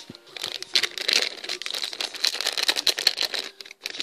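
Foil blind-bag packet crinkling, a dense irregular crackle, as it is handled and cut open with scissors.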